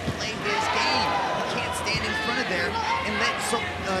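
Arena crowd noise: many voices shouting at once at a steady level.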